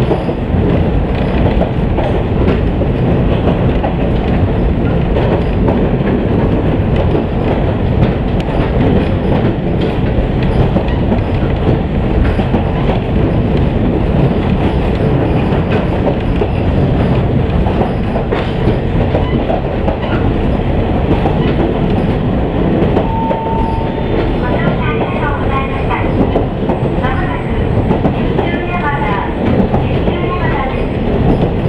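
Diesel railcar running along the line, heard from inside the passenger cabin as a steady rumble of engine and wheels on the rails. Near the end a brief tone sounds, followed by a voice.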